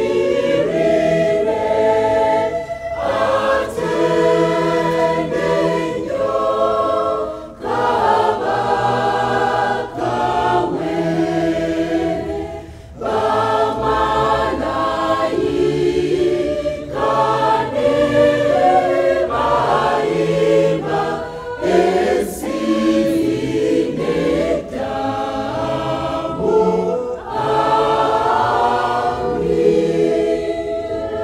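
Mixed church choir of women's and men's voices singing a gospel song in harmony, in phrases a few seconds long with short breaks between them.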